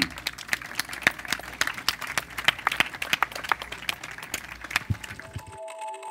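A small audience applauding, its separate hand claps irregular and uneven. Near the end the clapping cuts off abruptly and music with bell-like chime tones begins.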